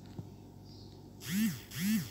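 A person's voice making two short hums, each rising and then falling in pitch, heard as a "hmm" and a little laugh in the second half.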